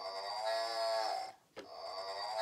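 A recorded cow's moo played electronically through a toy farm tractor's small speaker, heard twice: the first about a second and a half long, the second starting after a short break near the end.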